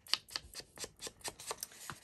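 Round foam ink blending tool dabbed repeatedly on an ink pad and the edge of a strip of paper, a quick, irregular run of dry taps, about five or six a second.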